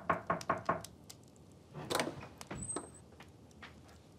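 Rapid knocking on a wooden door, about six quick knocks in the first second, then a heavier knock or door thump about two seconds in, followed by a few lighter taps.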